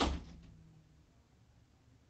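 A door shutting: one sharp thump right at the start, dying away over about a second.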